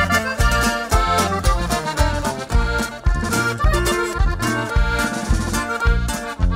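Instrumental break in a norteño song: a button accordion plays the lead melody over twelve-string guitar, electric bass and a drum kit keeping a steady beat.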